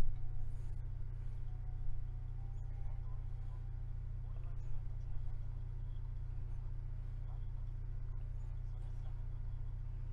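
A steady low hum runs throughout, with faint, indistinct speech beneath it.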